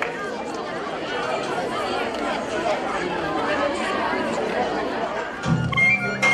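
Crowd chatter: many voices talking over one another in an audience. Near the end, folk dance music starts up with a low pulsing beat and a high melody line.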